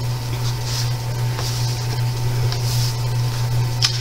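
A steady low hum runs throughout, with a few faint, soft rustles of a hand on paper pages.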